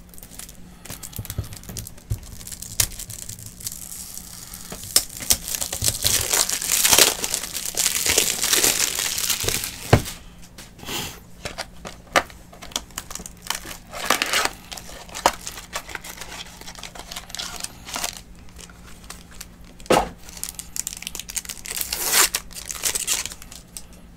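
Plastic wrap on a sealed trading-card box crinkling and tearing as it is handled and pulled open by hand. The crinkling comes in bursts, densest in a long stretch before the middle, with sharp clicks and shorter crinkles after.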